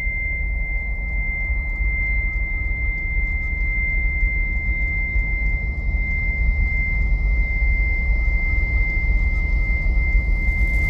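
Horror film trailer sound design: a steady high-pitched tone held over a deep rumble, slowly growing louder as the title card builds.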